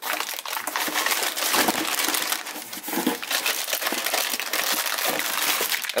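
Plastic wrapping crinkling and rustling as a clutch disc sealed in a plastic bag is handled in its cardboard parts box. The crackling runs on with no break.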